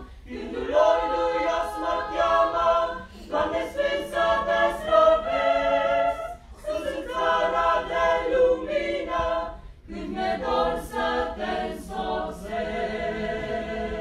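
Small mixed choir of young women and men singing a cappella, in phrases broken by brief pauses every few seconds, ending on a long held chord near the end.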